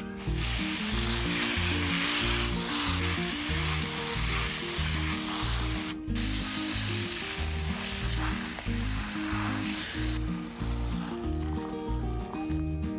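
Hiss of a hand-pump pressure sprayer misting water through its nozzle onto lettuce leaves, broken briefly about halfway and dropping away near the end. Background music with a steady beat plays underneath.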